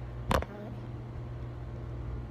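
A single knock of fingers bumping the phone as it is handled, about a third of a second in, over a steady low hum.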